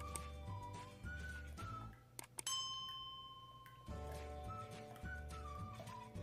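Background music with a whistle-like melody over a repeating bass line. A little past two seconds it breaks off for a few quick clicks and a single bell-like ding that rings for about a second, and the music comes back near four seconds.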